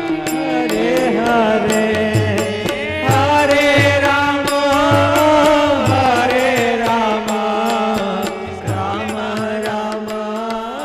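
Devotional arati song: a sung melody over a steady low drum beat, with sharp high taps keeping time.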